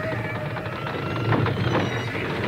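Wordless voices crying out, with a steady low rumble beneath them.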